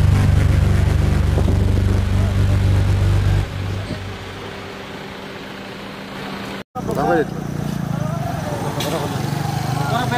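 Motor vehicle engine running close by, a loud low steady hum that drops away about three and a half seconds in, leaving quieter road traffic. After a sudden break near the end, people's voices.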